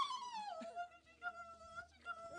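A person's high-pitched wailing cry that slides down in pitch about half a second in and is then held on a lower note.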